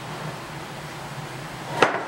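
A can of body filler handled on a wooden workbench, with one sharp knock near the end over a steady low hum.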